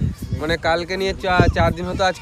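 A man speaking, his voice wavering in pitch on drawn-out syllables.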